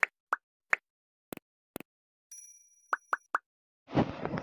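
Cartoon pop and click sound effects from an on-screen button animation: three short pops, two quick double clicks, a faint high ringing tone, then three pops in quick succession.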